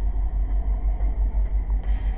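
Low, steady rumble of a freight train's cars rolling past on the rails.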